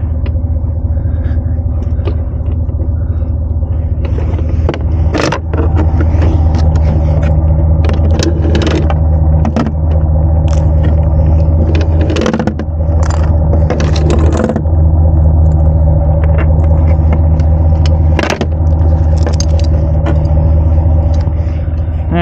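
A truck engine idling steadily throughout, with repeated short metal clanks, clinks and scrapes of towing hardware being handled.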